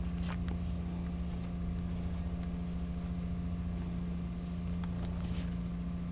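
Steady low electrical hum, with faint brief rustles and scrapes of hands pressing and smoothing paper on a craft mat, about a third of a second in and again around five seconds in.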